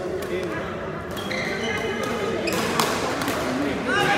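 Badminton players' court shoes squeaking on the sports hall floor, several short high squeaks from about a second in, with a sharp racket hit on the shuttlecock midway. Voices in the background.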